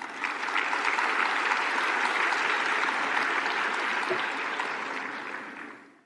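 Audience applauding steadily, the applause fading away near the end.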